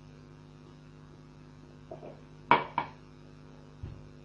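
A drinking glass set down on a hard surface: two sharp clinks about a third of a second apart, over a steady electrical hum, with a soft low thump near the end.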